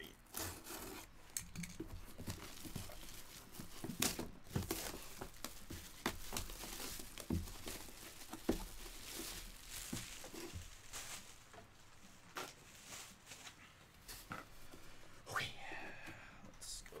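A sealed cardboard box being torn open and handled: packaging tearing and crinkling, with scattered irregular knocks and taps.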